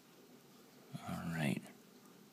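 A man's voice: one short, soft spoken sound about a second in, over quiet room tone.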